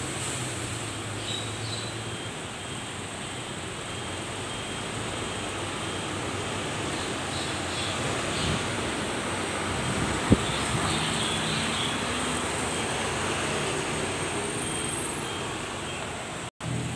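Steady noise of buses running at a bus interchange, a little louder as a double-decker bus drives past close by around the middle. A single sharp click comes about ten seconds in.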